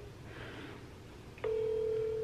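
Phone ringback tone: one steady low tone that starts suddenly about one and a half seconds in, the signal that an outgoing call is ringing at the other end.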